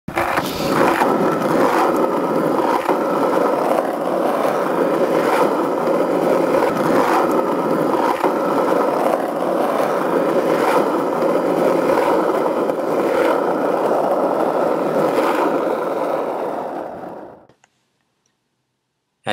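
Skateboard wheels rolling on asphalt: a steady rumble with a sharp click every second or so as the wheels cross cracks in the road. It fades out near the end.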